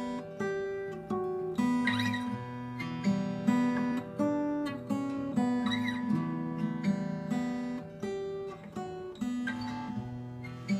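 Instrumental acoustic guitar intro: strummed chords ringing, with a new strum or chord change about every half second to a second.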